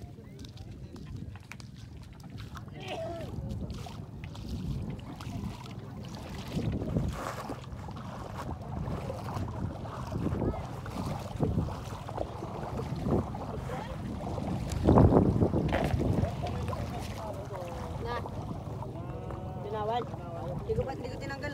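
Several people talking indistinctly in the background, with wind rumbling on the microphone and water sloshing in the shallows; a louder burst of noise about fifteen seconds in.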